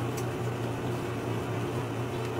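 Steady background hum with faint handling of a paper booklet and cardboard toy box packaging, with one light click early on.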